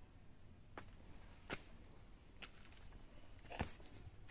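Quiet background with four faint, sharp clicks spread unevenly about a second apart.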